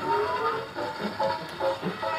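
Acoustic wind-up gramophone playing a 78 rpm record: a melody of short, quickly changing notes.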